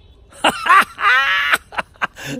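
A man's excited wordless vocal reaction, laughing and whooping, starting about half a second in and ending with a drawn-out cry that falls in pitch.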